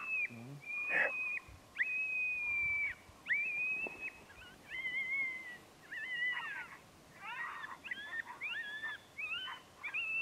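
A run of high coyote yips and short howls, each under a second, some with two pitches sounding together and dropping off at the end, the calls coming shorter and quicker in the second half. A single sharp knock sounds about a second in.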